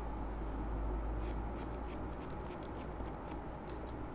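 Barber's hair scissors snipping hair in a quick run of crisp snips, about five or six a second, starting a little over a second in, as a palm-to-face cut is made through a combed section.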